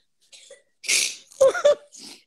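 A man laughing: a sharp, breathy burst of air about a second in, followed by two short, high-pitched voiced "ha"s.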